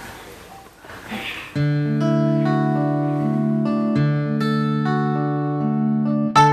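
Instrumental background music: after a quiet opening, a held chord of sustained notes comes in about a second and a half in and carries on steadily.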